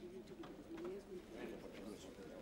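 Low murmur of people talking quietly among themselves in an audience, several soft voices overlapping.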